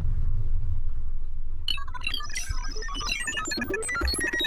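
Electronic logo sting: a deep rumble, joined about halfway through by a glittering cluster of high synthesized chime tones.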